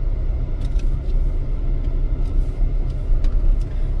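Steady low rumble of a car driving, heard from inside the cabin, with a few faint knocks.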